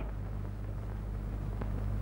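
Low, steady hum with faint hiss: the background noise of an old film soundtrack, with no other sound apart from one faint tick.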